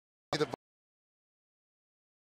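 Dead silence broken once, about a third of a second in, by a quarter-second burst of clipped sound that starts and stops abruptly: an audio glitch at a corrupted stretch of the broadcast.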